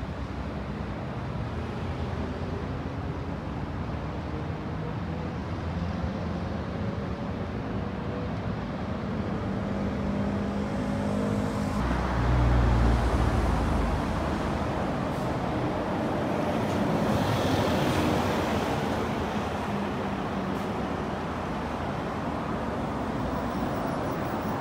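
Road traffic: car engines running and passing on the street. There is a loud low rumble about halfway through, and after it a steadier wash of traffic noise.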